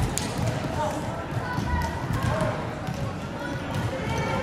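Echoing sports-hall hubbub of many players' voices and calls, with volleyballs being hit and bouncing on the wooden floor; one sharp hit lands right at the start.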